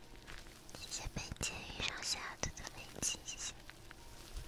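Soft whispering right at an ear-shaped binaural microphone, breathy and close, with a few sharp clicks scattered through it.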